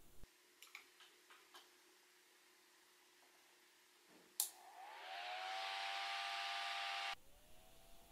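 A click of the Xilinx ZCU111 evaluation board being switched on about four seconds in, then the board's cooling fan spinning up: a whoosh with a whine rising in pitch. About seven seconds in the whoosh cuts off abruptly, leaving a fainter rising whine.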